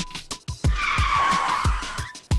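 Car tyres screeching for about a second in the middle, over action music with a fast, steady beat.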